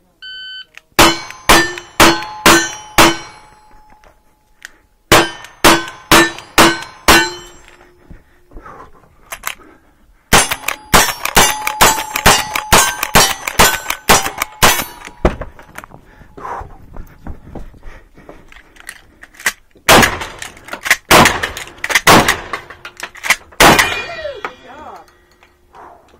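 A shot-timer beep, then a revolver fired in two runs of five shots, each shot followed by the ring of a hit steel target, then a lever-action rifle fired quickly about ten times with steel ringing, and a final group of heavier gunshots.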